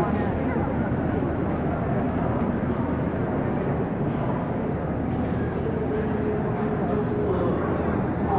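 Steady background chatter of many people mixed with the general noise of a large hall.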